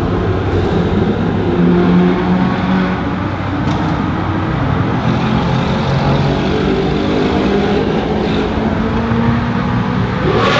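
Car engines running steadily at cruising speed through a road tunnel, heard from inside a car, with tyre and road roar echoing off the tunnel walls. The engine tone wavers slightly in pitch.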